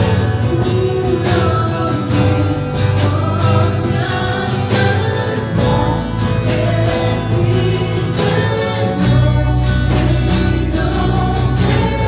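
Live worship band playing a Spanish-language worship song: a woman singing the lead line over acoustic and electric guitars, drums, and deep sustained bass notes.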